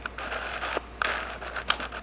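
Faint whirring of a camera's zoom and focus motor in two stretches of about a second each, with a few soft clicks.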